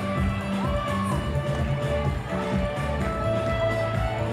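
Music playing, with sustained bass notes under held higher tones.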